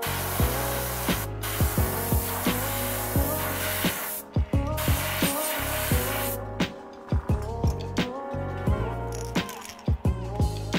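Airbrush spraying paint onto a crankbait lure in hissing bursts: a stretch of about four seconds, briefly broken, then a shorter one of under two seconds. Background music with a steady beat plays throughout.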